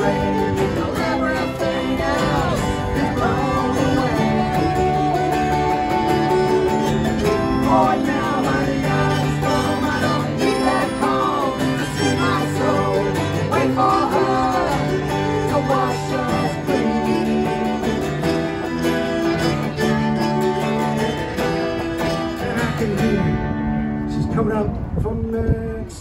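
Live acoustic folk band playing: strummed acoustic guitar with fiddle and cello, and a woman singing. The top end of the sound thins out near the end.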